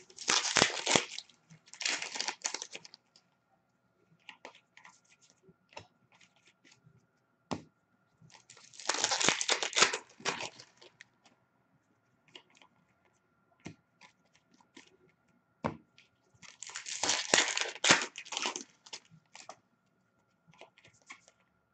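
Hockey card pack wrappers crinkling and tearing as packs are ripped open by hand, in three bursts about eight seconds apart, with light taps of cards being handled in between.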